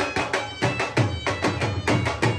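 Live street band of dhol drums and a wind instrument: loud, regular drum strokes, about four a second, under a held, piping melody.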